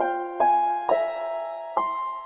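Virtual harp notes from the Pluck iPad app, plucked one at a time: three notes in two seconds, each starting sharply and ringing on as it fades.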